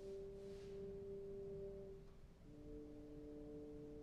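Bass trombone playing soft, sustained notes. One held note gives way, about two and a half seconds in, to a lower held note.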